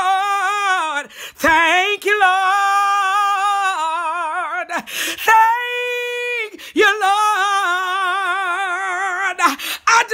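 A woman singing gospel praise unaccompanied, holding four long wordless notes with heavy vibrato, the third higher and steadier, with short breaths between them.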